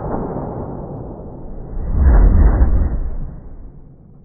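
Slowed-down boom of a Greener harpoon gun's .38 Special blank shot, heard as a deep, muffled rumble that swells about two seconds in and then fades away near the end.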